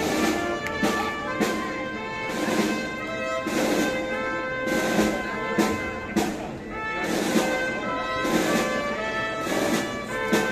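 A wind band plays a slow processional march. Brass and woodwinds hold sustained chords, and percussion strikes at uneven intervals of about half a second to a second.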